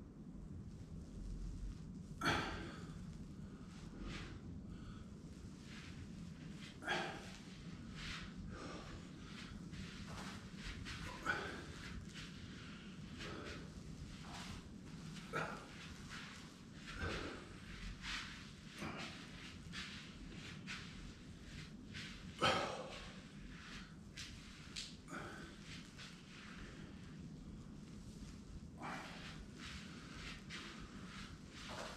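A person breathing slowly during yoga stretches, with short, audible exhales every few seconds, two of them clearly louder, over a steady low hum.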